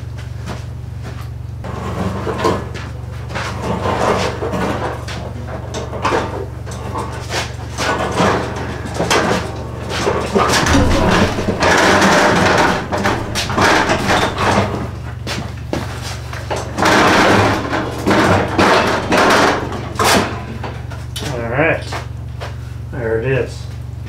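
Husky adjustable work table with a steel frame and butcher-block top being wheeled on its casters across the floor and manoeuvred into place, with repeated knocks, rattles and scraping, busiest about half-way through. A steady low hum runs underneath.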